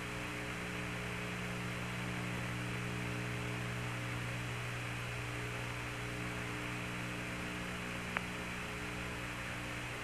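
Steady electrical hum with static hiss on the Apollo radio voice channel between transmissions, with one faint click about eight seconds in.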